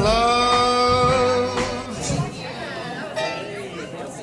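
A song for dancing ends on one long held sung note, which stops about two seconds in; then guests chatter in a large room.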